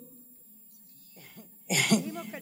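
A quiet pause, then near the end one short, loud cough picked up by the stage microphone.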